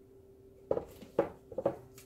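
Three short knocks about half a second apart, starting just under a second in: a stretched canvas being set down and settled flat on the work table.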